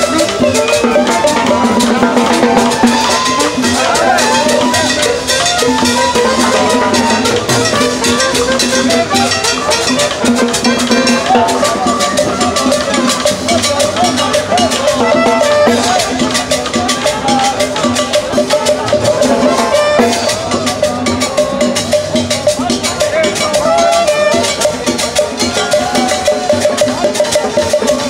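Live street band playing tropical dance music: a saxophone melody over a steady beat of hand drums and percussion.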